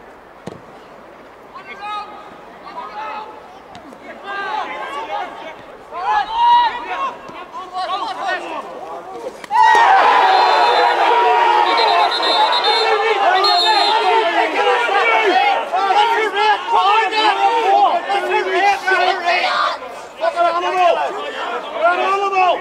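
Men's voices calling across a football pitch, scattered at first; about ten seconds in, a loud clamour of many voices shouting at once breaks out and carries on. Players and spectators are reacting to a foul that ends in a booking.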